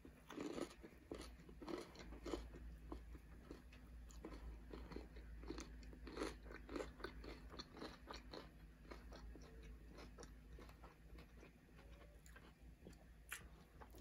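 A person biting into and chewing a corn dog close to the microphone: faint crunches of the fried batter crust and mouth clicks, about two a second.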